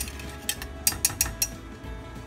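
Wire whisk clinking against the sides of a white enamel saucepan while stirring gravy: about five sharp metallic clicks, bunched in the middle.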